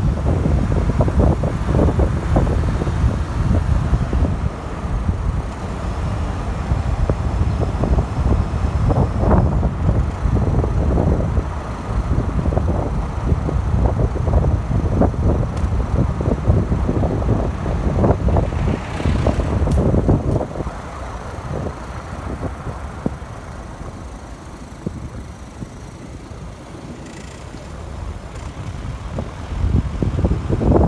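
Wind buffeting the microphone: a loud, gusty low rumble that eases for a few seconds near the end. A car passes along the road about two-thirds of the way through.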